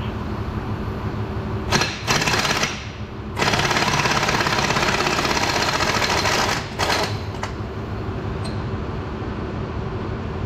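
Pneumatic impact wrench hammering on the transmission's bolts in two bursts, a short one about two seconds in and a longer one of about three seconds, with a couple of short clicks after, over a steady shop hum.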